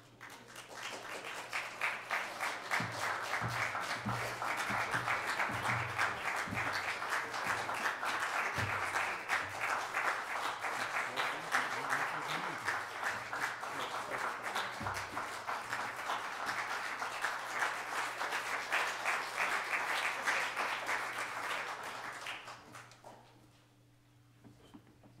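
Audience applause in a concert hall, swelling within the first couple of seconds, holding steady, then dying away about a second before the end.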